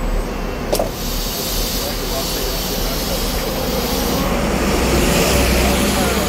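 Bus and road-traffic engines running close by, a steady low rumble that grows a little louder in the second half, with one sharp click about a second in.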